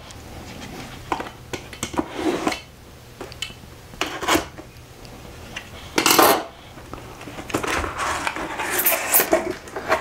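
Cardboard product box being opened and handled: scattered clicks, scrapes and knocks of flaps and packaging, the loudest about six seconds in and a cluster of them near the end.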